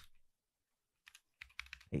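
Computer keyboard keystrokes: after about a second of near silence, a few separate key clicks in the second half.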